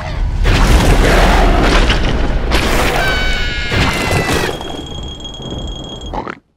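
A loud cartoon boom with a deep rumble lasting about two seconds. A high whistle-like tone follows, sliding slightly down, and then a thin, steady high ring.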